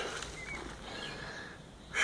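Soft rustle of loose leaf-and-grass compost being tipped by hand into a plastic bucket, low and even, with a brief faint chirp about half a second in.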